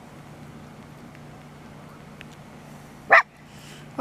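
One short, loud animal call rising in pitch, about three seconds in, over a steady low hum.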